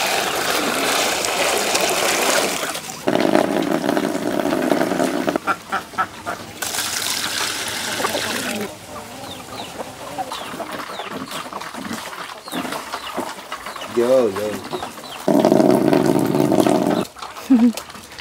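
Water poured from a bucket into a plastic basin in four long pours, the last one deeper in tone. A short call from the farmyard fowl comes between the third and fourth pours.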